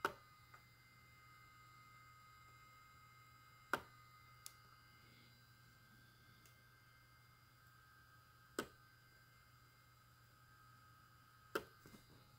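Malectrics Arduino spot welder firing weld pulses through hand-held probes onto strip on battery cells: four sharp snaps, about three to four seconds apart.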